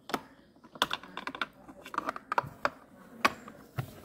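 Small plastic doll figure and toy dollhouse pieces clicking and tapping as they are handled, a run of irregular light clicks.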